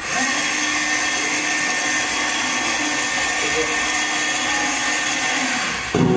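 A steady whirring, motor-like noise with a faint low hum, starting suddenly and cutting off suddenly about six seconds later.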